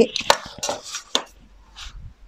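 A steel ruler and craft knife being handled on a cutting mat and paper: a few sharp metallic clicks and knocks in the first second or so, then a brief soft rustle near the end.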